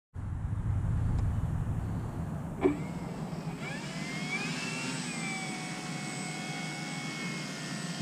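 Electric brushless motor of a Nexa Tiger Moth RC biplane spinning its propeller. From about halfway in, its whine rises in pitch and then holds steady at low throttle. Before that there is a low rumble on the microphone and a single click.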